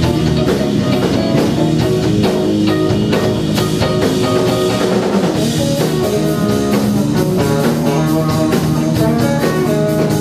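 Live rock band playing an instrumental: electric guitar and electric bass over a drum kit, continuous and loud.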